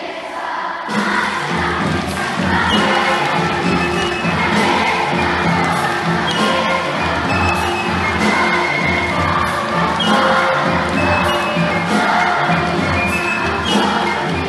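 Crowd noise from the hall, then about a second in a live instrumental ensemble starts playing loudly, with a pulsing low beat under pitched melody lines.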